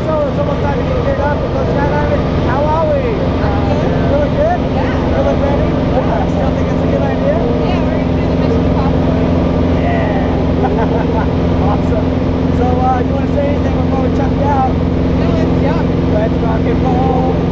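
Small propeller plane's piston engine droning steadily, heard from inside the cabin in flight, with indistinct voices over it.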